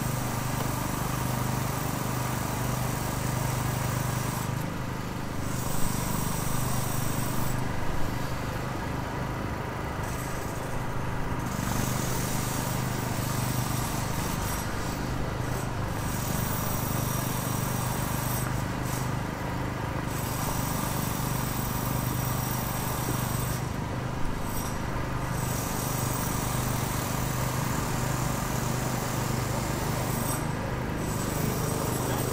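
City street road works: a steady low engine hum under a constant wash of traffic noise, with a few sharp knocks about six, eight and twenty-four seconds in.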